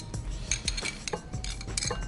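Metal spoon clinking against a bowl and pan as carrot pieces are scooped and dropped into the tagine, several light, separate clinks and knocks.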